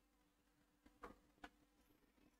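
Near silence: faint steady room hum, with two faint short clicks about a second in.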